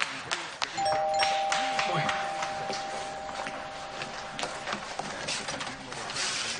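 A two-tone doorbell chime rings once, a higher note followed at once by a lower one, both held for about three and a half seconds. It signals a visitor at the front door.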